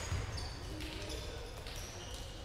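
Background sound of a large sports hall with play stopped: indistinct voices, a soft thud just after the start, and a few brief high squeaks.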